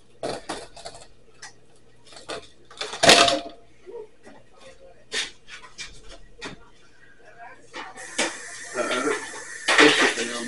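Kitchenware being handled: a disposable aluminium foil pan and dishes clinking and knocking in a quick, irregular series, the loudest knock about three seconds in. Near the end a steady hiss sets in, with voices over it.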